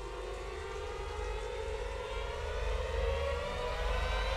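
Suspense film score: a sustained drone of many held tones over a low rumble, the tones slowly rising in pitch and the whole swelling louder.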